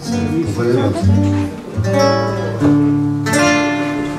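Acoustic guitar playing the opening bars of a song: about five plucked chords, each left to ring and fade before the next.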